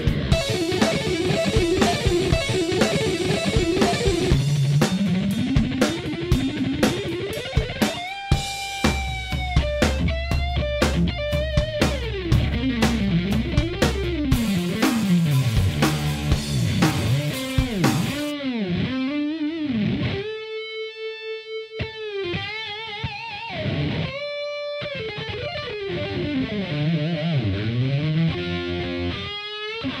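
Rock music with electric guitar and drums; after about 18 seconds the drums mostly drop out and the guitar carries on with sweeping, gliding effects.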